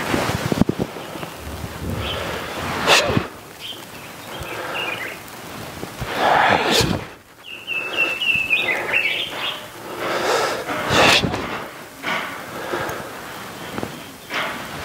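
A person's forceful exhalations: several long, breathy rushes a few seconds apart. A bird chirps briefly about halfway through.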